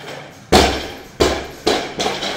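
A barbell loaded to 220 kg with rubber bumper plates, dumped from the lifter's back onto the platform. It lands with one heavy crash about half a second in, then bounces twice with slightly quieter impacts.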